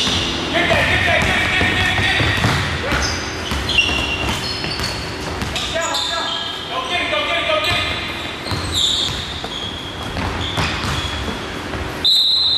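Basketball game on a hardwood gym floor: a ball bouncing, repeated short high squeaks of sneakers on the court, and indistinct players' voices.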